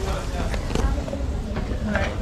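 Indistinct background voices over a steady low rumble, with a few faint clicks.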